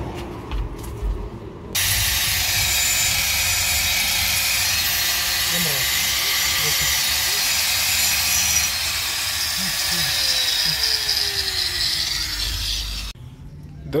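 Electric angle grinder cutting metal. It starts suddenly about two seconds in, runs with a steady high hiss for about eleven seconds, and cuts off just before the end.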